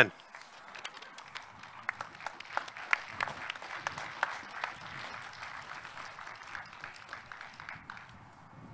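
Light applause from a small crowd of graduates, the individual claps plainly separate, strongest a few seconds in and thinning out towards the end.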